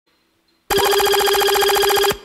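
Telephone-style ringtone: a fast, even trill on a steady pitch that starts suddenly after a short silence about two-thirds of a second in.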